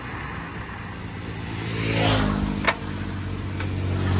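Royal Enfield single-cylinder motorcycle engine being restarted after stalling, catching and running steadily from about two seconds in.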